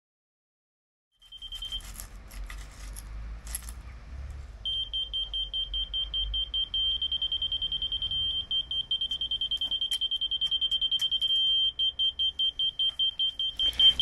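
Laser level receiver on a levelling staff beeping with a high pitch: a fast run of beeps that turns into a steady tone for a few seconds at a time when the staff sits at the laser's height, then breaks back into beeps. A few light knocks come just before the beeping starts, after about a second of silence.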